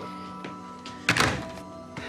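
A telephone handset hung up on a wall-mounted landline phone: one sharp clack a little after a second in, over steady background music.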